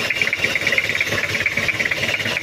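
Toyota Kijang diesel engine idling rough at too-low revs, with a steady rapid diesel clatter, shaking badly. The mechanic thinks the cause could be a slack timing belt or a dirty diesel fuel filter starving it of fuel, as if partly air-locked.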